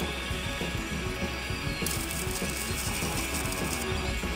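Background music over the steady crackle of electric arc welding on thin 1 mm steel cone-pipe rings, the hiss growing brighter about halfway through.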